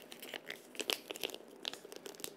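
Clear transfer film (Laser-Dark A-foil) being peeled slowly by hand off a cooled heat-transfer print on a bag, giving faint, irregular little crackles and clicks as it comes away.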